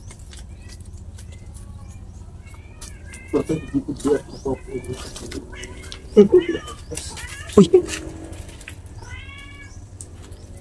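A cat meowing in a series of calls, the loudest about six and seven and a half seconds in.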